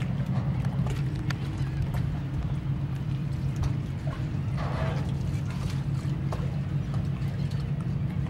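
Steady low drone of a boat's engine, with a few light knocks and clicks over it.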